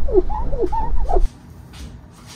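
A rag rubbing on windshield glass, squeaking in a quick series of short rising and falling chirps over a low rubbing rumble, wiping off stray spray-adhesive overspray. It stops abruptly a little over a second in.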